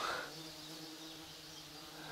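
A flying insect buzzing faintly and steadily at one low pitch.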